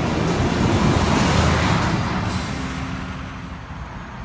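A box truck driving past close by. Its engine and tyre noise swells to a peak about a second in, then fades away over the next two seconds, with background music underneath.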